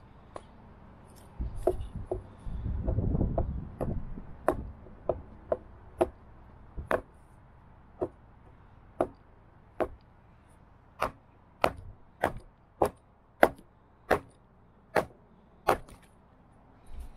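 Hatchet striking into a round log stood on a wooden plank: a steady run of sharp wooden knocks, roughly one a second, louder in the second half, as the log is split into quarters. Early on there is a short spell of wooden pieces being handled and set down.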